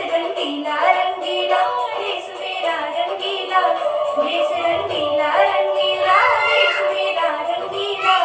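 A girl singing a song into a handheld karaoke microphone, with music playing under her voice.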